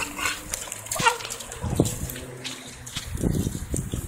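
A wet pit bull making a few short vocal sounds, with low bumps of the camera being handled near the end.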